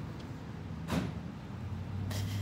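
Low, steady hum of an idling vehicle engine, with a single short, sharp sound about a second in.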